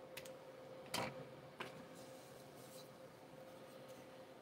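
Faint handling sounds of small model parts being worked by hand at a table: two light clicks near the start, a sharper tap about a second in and another click soon after, over a faint steady hum.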